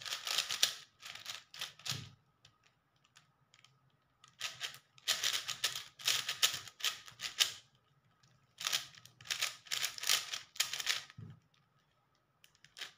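Plastic speed cube being turned fast by hand: rapid clacking of its layers in bursts of one to three seconds, with short pauses between them.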